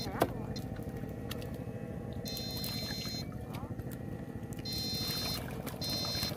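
An electric fish shocker's inverter whining in high-pitched bursts that switch on and off, each under a second long, as current is pulsed to the electrode poles. Under it runs a steady low mechanical drone, with one sharp click just after the start.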